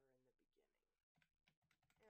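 Faint typing on a computer keyboard: a short run of keystrokes.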